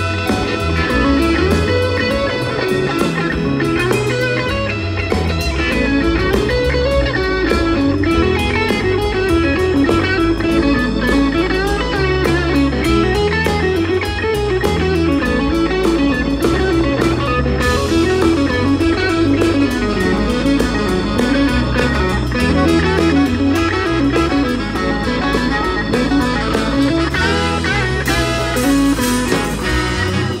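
Live band playing: an electric guitar carries a winding lead line over bass and drums, bluesy rock.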